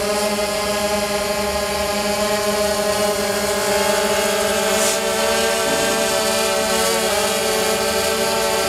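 DJI Phantom 2 quadcopter hovering close by: its four brushless motors and propellers make a steady buzz of several stacked tones, the pitch shifting slightly in the middle as it holds position.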